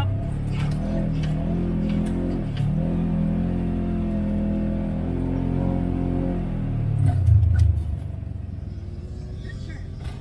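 Off-road vehicle's engine running under throttle, its note rising and falling, with a louder surge about seven seconds in before it drops back to a lower, quieter running as the vehicle slows. Light clicks and rattles from the machine over the bumps.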